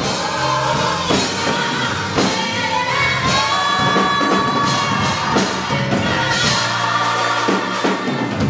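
Gospel choir singing in harmony, holding long notes, accompanied by a drum kit with cymbal crashes.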